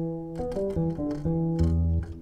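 Lowrey Palladium electronic organ playing its electric piano voice: a short phrase of held notes, with a low bass note joining near the end.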